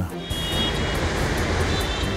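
Steady street traffic noise: a continuous hum of passing vehicles with no single one standing out.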